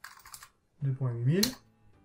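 Computer keyboard keystrokes: a quick clatter of typing, then a single sharp key press that sends the typed address. A brief wordless vocal sound rising in pitch runs over that last key press.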